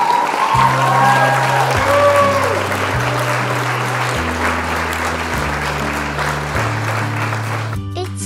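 Crowd cheering and applauding over upbeat music with a walking bass line, with a few high whoops at the start; the cheering stops abruptly just before the end.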